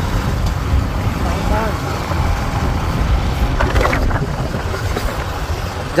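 Wind buffeting the microphone on a moving two-wheeler, a steady low rumble mixed with road noise.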